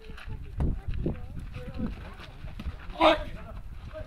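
Distant voices of volleyball players and onlookers calling out on an outdoor court, with one louder cry about three seconds in.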